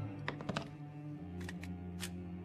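Film score of sustained notes, with a handful of light clicks of metal cartridges and gun parts being handled on a table, a few near the start and a few more past the middle.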